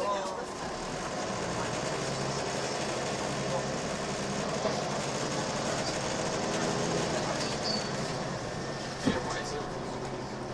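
Inside a Volvo B10BLE single-deck bus under way: the diesel engine runs steadily under road and tyre noise, swelling a little midway. A single sharp knock from the bus body about nine seconds in.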